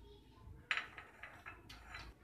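A spoon lightly clinking and scraping against a blender jar while powdered sugar is added: a louder clink about two-thirds of a second in, then a few softer taps.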